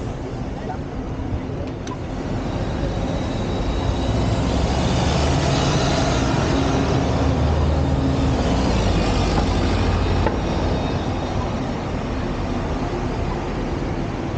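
City bus engine running as the bus drives slowly past close by, swelling to its loudest midway and easing off after about ten seconds, over general traffic noise.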